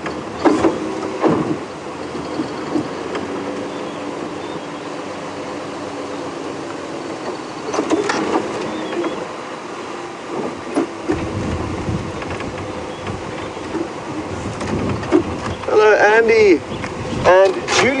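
Open safari vehicle driving slowly along a rough dirt track: a steady engine hum with road and body noise.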